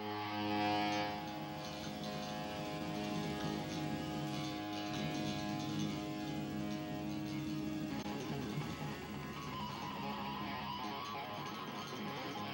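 Amplified electric guitar letting held chords ring, the sustained notes thinning about eight seconds in.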